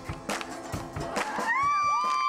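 Live band music with a steady beat and a crowd clapping along in time; about one and a half seconds in, a long high held note comes in over it.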